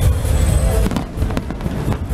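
Aerial fireworks going off overhead: a dense run of deep bangs, with a few sharp cracks a little past a second in. Music plays underneath.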